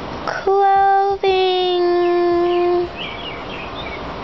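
A voice singing two long held notes on nearly the same pitch, a short one and then one about a second and a half long that sags slightly in pitch before it stops.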